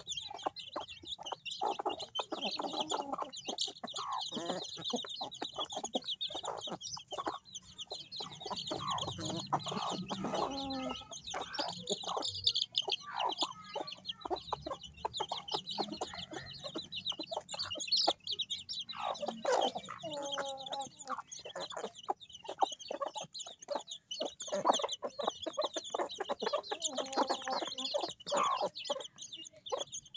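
A brood of chicks peeping continuously in high, rapid cheeps, with hens clucking lower among them now and then.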